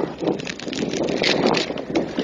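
Wind on a handheld phone's microphone, mixed with indistinct, muffled voices.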